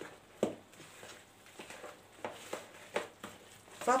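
A hand mixing a wet vegetable batter in a plastic bowl: a few short squelches and soft taps against the bowl, the loudest about half a second in.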